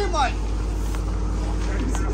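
A steady low mechanical hum, like a motor running, under a faint hiss, with a man's chanting voice trailing off at the very start.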